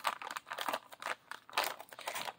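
Plastic toy packaging crinkling and rustling in short, irregular bursts as it is handled and pulled open.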